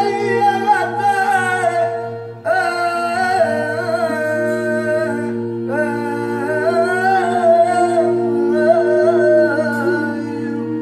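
A solo voice sings long, wavering, ornamented flamenco-style phrases over a steady sustained drone. The voice breaks off briefly twice, about two and a half and five and a half seconds in, while the drone holds on underneath.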